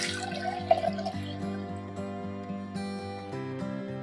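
Peanut milk poured from a glass bowl into a steel vessel, a splashing pour during the first second or so, over background music with sustained notes.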